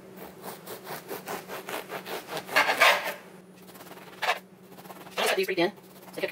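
A kitchen knife sawing back and forth through a loaf of crusty French bread on a wooden cutting board, the crust rasping in quick repeated strokes, loudest about two and a half seconds in.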